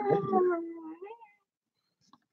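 A dog howling, one drawn-out call that fades away just over a second in.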